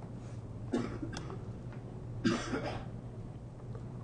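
A person coughs twice, the second cough about a second and a half after the first and louder, over a steady low room hum.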